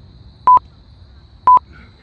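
Workout interval timer counting down: two short electronic beeps of one pitch, a second apart, marking the last seconds of the exercise.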